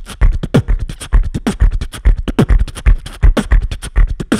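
Bass house beatboxing into a handheld microphone: a fast, dense run of mouth kicks with a quickly falling pitch, mixed with snares and hi-hat clicks.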